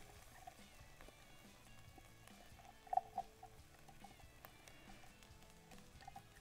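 Quiet sounds of chopped shallots and garlic being tipped from a glass bowl into a hot oiled pan, with a short soft knock about three seconds in, over faint background music.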